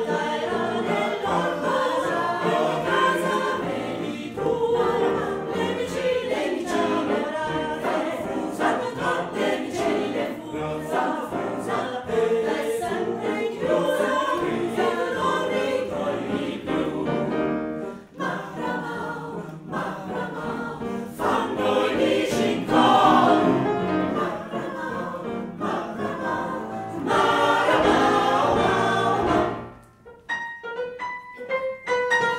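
Mixed choir of women's and men's voices singing together, with a brief break in the sound about two-thirds of the way through.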